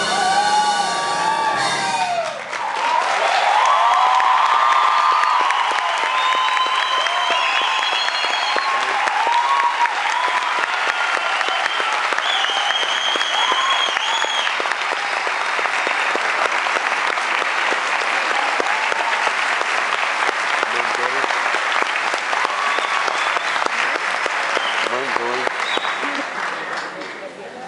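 A full symphony orchestra's last chord cuts off about two seconds in, and the audience breaks into loud, steady applause with scattered cheering, which fades near the end.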